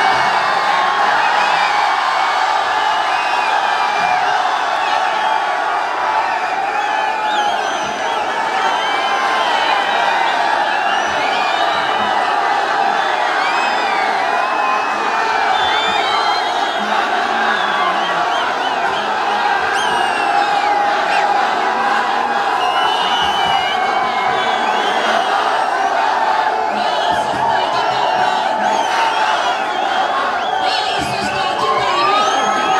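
A large crowd of marchers, many voices shouting and cheering at once, loud and steady throughout with scattered higher calls above the din.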